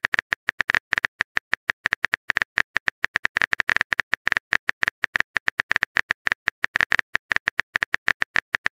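Phone keyboard typing sound effect: a fast, uneven run of short identical clicks, several a second, as a text message is typed out.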